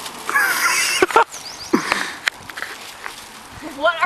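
Excited high-pitched shrieks and laughter from a small group, with a few sharp clicks in between and talk picking up again near the end.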